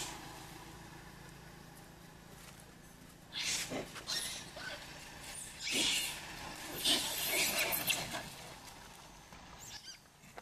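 Macaques chasing each other: a quiet stretch, then short, harsh, noisy bursts about three seconds in and again through the sixth to eighth seconds.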